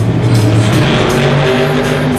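Monster truck's supercharged V8 engine running hard under throttle as it drives across the dirt floor, its pitch climbing in the second half. Loud arena music plays along with it.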